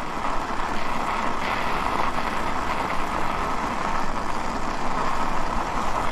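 Steady rolling noise of an e-bike's tyres on packed snow and ice, an even rush with no breaks.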